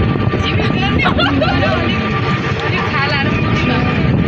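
Steady engine and road noise of a crowded passenger vehicle, heard from inside the cabin, with passengers' voices over it.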